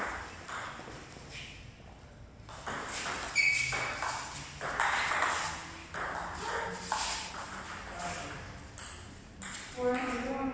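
Table tennis rally: the celluloid-type ball ticking off the bats and bouncing on the table in an irregular series of sharp clicks, each with a short echo from the bare concrete hall.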